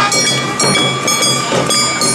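Awa odori festival band music: drums beating a steady rhythm of about two beats a second under high held, ringing notes.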